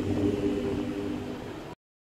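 Choir singing a sustained chord that fades slightly and then cuts off suddenly near the end.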